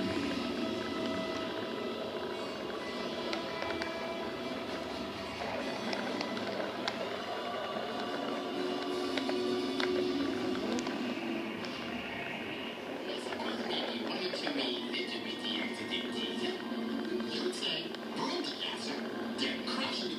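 A film soundtrack playing from a television heard across a room: music with sound effects and some dialogue.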